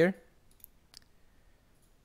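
A spoken word trails off, then a quiet room with two faint, sharp clicks, about two-thirds of a second and one second in, from hands working a computer's keys or mouse.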